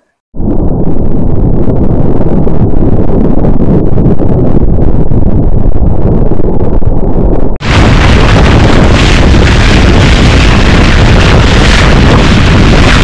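Loud wind buffeting the microphone together with water rushing and splashing along the hull of a Montgomery 17 sailboat heeled under sail. The sound is muffled and rumbling at first. After a brief dropout about seven and a half seconds in, it turns brighter and hissier.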